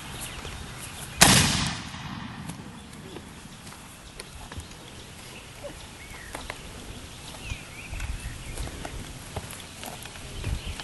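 A single gunshot about a second in, sharp and loud and dying away within half a second, fired from horseback close over the horse's head.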